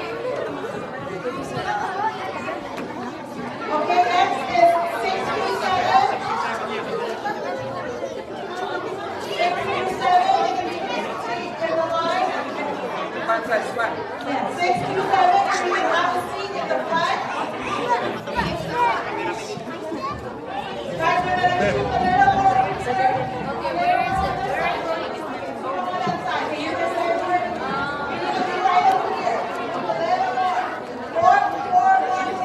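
Many children and adults chattering at once in a large hall, an unbroken babble of overlapping voices.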